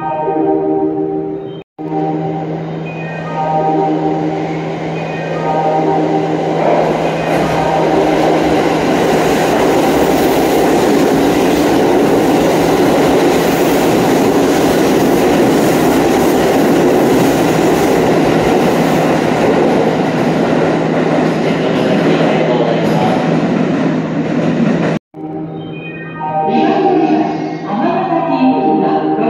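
A train running along an underground station platform. Its wheel and running noise builds from about six seconds in and stays loud until it cuts off suddenly near the end. A few notes of a melody sound in the first seconds.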